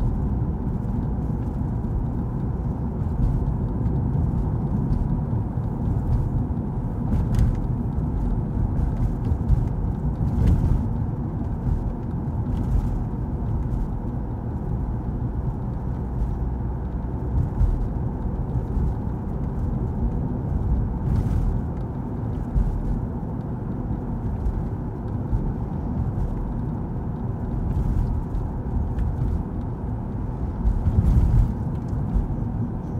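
Car cabin road noise while driving at town speed: a steady low rumble of tyres and engine, with a few brief clicks along the way.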